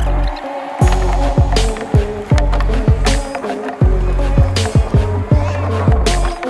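Background music with a steady beat: a deep kick drum about twice a second over a sustained bass line.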